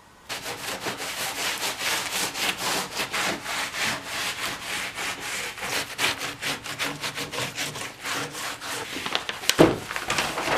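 A brush scrubbing oil onto a rough-hewn wood slab in quick, steady back-and-forth strokes. Near the end there is a brief louder rustle as a roll of kraft paper is handled.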